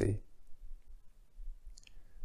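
A man's voice finishing a word at the start, then a quiet pause of room tone with a faint, short click near the end.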